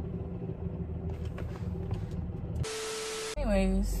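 The car's idling drone: a steady low hum with a faint higher tone held above it, the really weird noise the owner hears from her car. About two and a half seconds in it gives way to a short burst of hiss with one steady tone, then cuts off.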